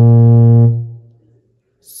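A low bass note played on a Yamaha electronic keyboard, the last note of a bass-line phrase. It is held for under a second, then released and dies away to near silence. Near the end a single word is spoken.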